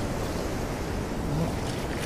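Small surf waves washing up the sand, a steady rush of water.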